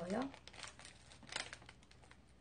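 Plastic wrapper of a wafer bar crinkling as it is pulled open by hand, in a few short crackles about half a second and a second and a half in.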